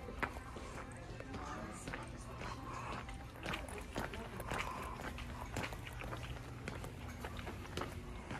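Footsteps of sneakers on a hard tiled floor, short ticks about once or twice a second at a walking pace, over a steady low store hum with faint background music and voices.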